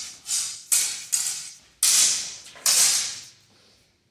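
Steel longsword blades clashing in a quick exchange: about five sharp metallic strikes in under three seconds, each ringing briefly.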